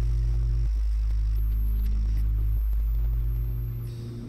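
Low, sustained synthesizer drone from a background score, its bass note changing twice before it fades out near the end.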